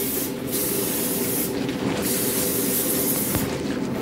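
Spray-tan sprayer hissing as tanning solution is sprayed onto bare skin, the hiss breaking off briefly three times, over a steady low hum.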